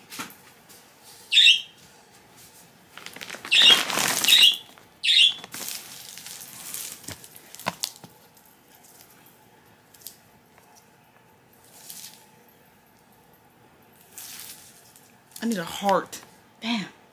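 Bedding rustling as a bed is straightened and smoothed, loudest about four seconds in and again near the end. Several short high-pitched squeaks come and go, and a brief voice-like sound comes at the very end.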